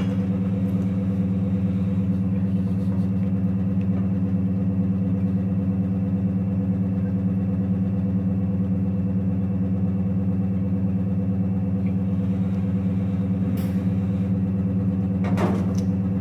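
Biosafety cabinet blower running with a steady low hum, with a couple of faint clicks near the end.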